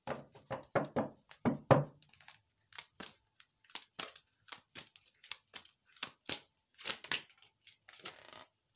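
Deck of tarot cards being shuffled by hand: a run of quick papery slaps and clicks, densest and loudest in the first two seconds, then lighter, sparser snaps.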